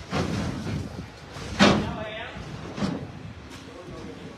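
Voices in the background with a loud knock or bang about one and a half seconds in and a smaller one near three seconds.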